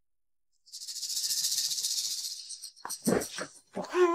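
A high, hissy, shaker-like swish of an edited-in transition sound effect lasting about two seconds, followed by a few soft thuds and rustles about three seconds in.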